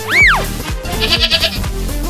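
Comedy sound effects over background music. A loud quick whistle-like glide rises and falls in pitch at the start. About a second in comes a short wavering, bleat-like call.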